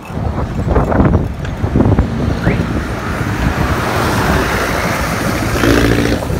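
Wind rushing over the microphone of a bicycle on a downhill run, rising and falling in gusts, with road traffic behind it. A passenger jeepney's engine and tyres grow louder from about halfway in as it comes up to overtake near the end.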